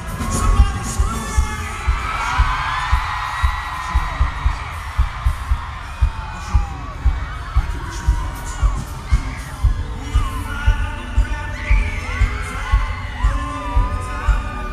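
Live music from an arena sound system: a heavy, steady bass beat with fans screaming over it. The screams are loudest a couple of seconds in and again near the end.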